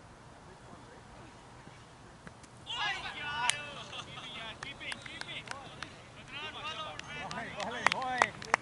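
Faint outdoor background, then, about three seconds in, several cricket players start shouting and calling out excitedly, with a few sharp claps, louder near the end.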